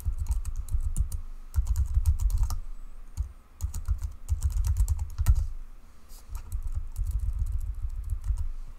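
Typing on a computer keyboard: quick bursts of keystrokes with short pauses between them.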